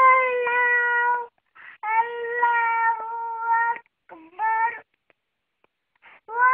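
A young child's high voice chanting Quranic recitation in the style of a qari, in long, drawn-out melodic phrases. There are three phrases, the last one short, and then a pause of about a second near the end.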